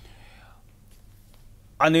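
A short pause in a man's speech: a soft breath at the start of the gap over a faint low hum, then his talking resumes near the end.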